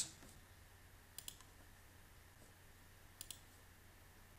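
Near silence broken by faint computer mouse clicks: a quick pair about a second in and another quick pair about three seconds in.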